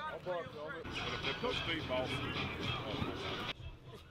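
Several people shouting and yelling over one another during a football line drill, starting about a second in and cutting off suddenly near the end, with background music under it.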